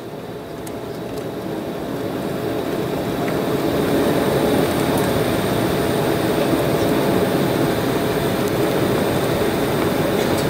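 Cabin noise of an Embraer 190 jet taxiing after landing: a steady rush of engine and rolling noise that swells over the first four seconds, then holds.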